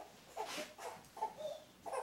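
A few soft, short vocal sounds from a person, broken by pauses, in a small room with some echo.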